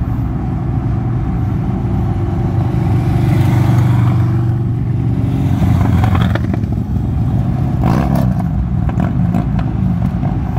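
Steady road and engine noise inside a car moving at freeway speed. A cruiser motorcycle riding close alongside gets louder from about three seconds in, and a few short rattles or knocks come near the end.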